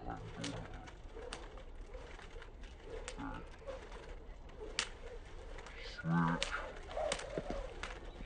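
Skipping rope slapping the wet pavement on each slow side swing, making sharp clicks roughly once a second at an uneven pace. A short burst of voice comes about six seconds in.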